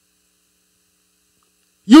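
Near silence during a pause in speech, with at most a very faint hum; a man's amplified voice starts just before the end.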